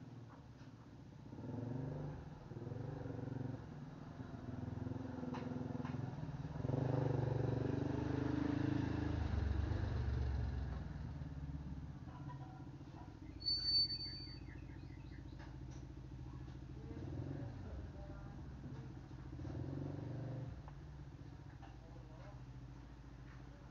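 A motor vehicle's engine running, growing louder over several seconds and then fading away. A short high chirp sounds a little past the middle.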